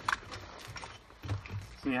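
Light clicks and handling knocks of a firefighter's breathing apparatus as the air regulator is taken up to be fitted to the face mask.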